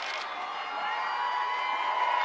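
Outdoor crowd cheering and calling out, many voices overlapping, with a drawn-out call standing out from about a second in.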